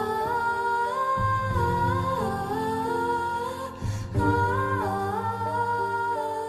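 Wordless female vocal humming a slow melody that glides between held notes, over a low sustained accompaniment; a short break about four seconds in leads into a second, similar phrase.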